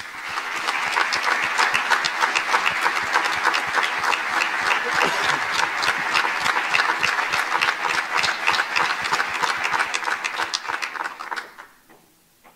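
Audience applauding, many hands clapping; the applause builds up in the first second and dies away near the end.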